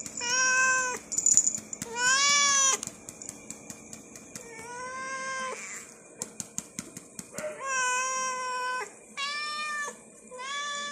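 Two domestic cats meowing over and over while begging for food held above them: about five long, drawn-out meows, each a second or so long, with short gaps between.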